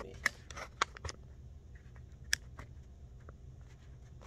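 A leather handbag being handled: about four sharp metallic clicks in the first two and a half seconds, from its metal rings, chain and zipper knocking together, with light rustling between.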